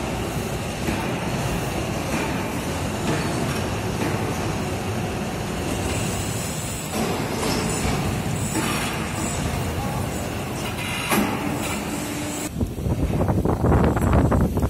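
Steady, dense noise of heavy machinery in a concrete pole factory, with no single beat or tone standing out. About a second and a half before the end it gives way to wind buffeting the microphone.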